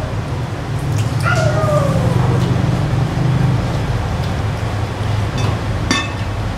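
A short whimper that falls in pitch, about a second in, over a steady low hum. Near the end comes a sharp click, like a ceramic mug set down on a table.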